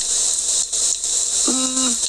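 Steady high hiss, with a brief held vocal hum from a person, one steady pitch, about a second and a half in.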